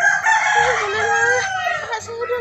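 A rooster crowing: one long call whose pitch falls toward the end.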